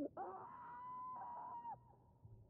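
A long, high wail from the TV episode's soundtrack, rising quickly and then held on one pitch for about a second and a half before it breaks off near the end.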